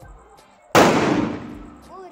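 A firecracker goes off with a sudden loud bang about three-quarters of a second in, its crackling noise fading away over about a second.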